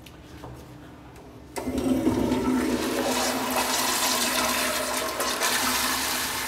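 Lamosa Vienna Flux flushometer toilet flushing a bowl packed with toilet paper: a sudden rush of water about a second and a half in, running steadily and loudly as it clears the paper.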